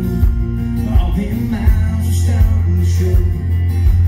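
Live country band playing a song: a male lead vocal over acoustic and electric guitars, bass and drums, with a heavy bass and regular drum hits.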